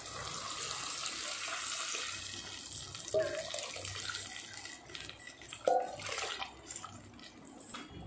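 Liquid pouring and splashing into a clay pot for about five seconds, then fading. A ladle stirring the curry gives a few small knocks near the end.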